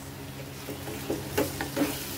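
Yogurt-marinated chicken frying in a pot with a faint sizzle, over a steady low hum. In the second half a wooden spatula starts stirring, making several short scrapes and knocks against the pan.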